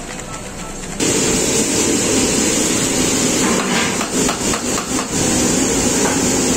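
Loud steady hiss of a high gas burner and oil sizzling in a large aluminium pot, starting suddenly about a second in. A run of knocks and clatters comes in the middle.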